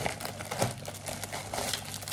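Plastic packaging crinkling and rustling irregularly as it is handled and pulled open by hand.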